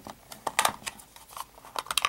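Plastic case of a cheap plug-in electricity saving box being pried apart at its seam with a flat tool: an irregular run of light plastic clicks and snaps, the loudest near the end as the case halves come apart.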